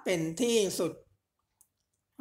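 A voice reading a Thai Buddhist scripture aloud, stopping about a second in. After a pause comes a single short click.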